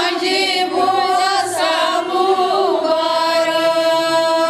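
Kashmiri Pandit women singing wanwun, the traditional wedding song, together in a chant-like group voice over a steady held drone.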